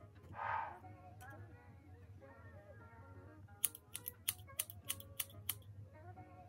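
Scissors snipping through a synthetic curly wig: a quick run of about eight sharp snips in the second half, after a brief rustle near the start, over background music.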